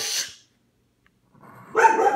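A dog barking: one bark dying away at the start, then two barks in quick succession near the end.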